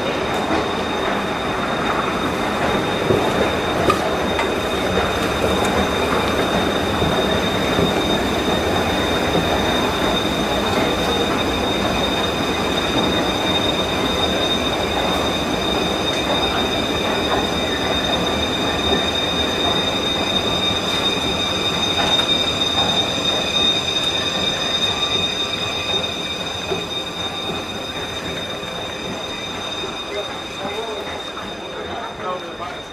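A train running on rails: a continuous rumble with a steady high-pitched squeal over it, fading slightly near the end.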